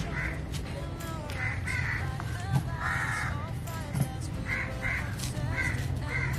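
Crows cawing again and again in short harsh calls, one a little longer about halfway through, with other birds chirping softly beneath and a few light knife clicks.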